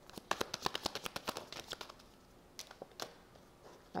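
Tarot deck shuffled by hand: a quick run of card clicks for about two seconds, then a pause broken by a couple of single clicks, and a few more clicks near the end.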